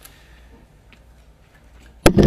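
Quiet room tone with a steady low hum and a couple of faint clicks, one about halfway through.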